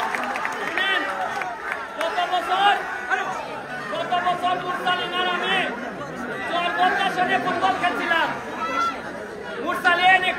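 A man talking loudly into a handheld microphone over the chatter of a surrounding crowd.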